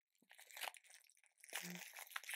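Faint crinkling and rustling of plastic packaging being rummaged through, with a brief voiced murmur near the end.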